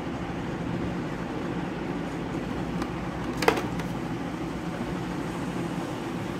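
Steady low room hum, with one brief sharp click about halfway through as the plastic blister pack of a toy car is handled.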